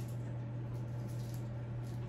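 A steady low hum over quiet room tone, with no distinct handling sounds.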